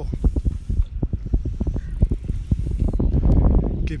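Wind buffeting a phone's microphone as a low rumble, with many irregular clicks and knocks of the phone being handled as it pans, denser near the end.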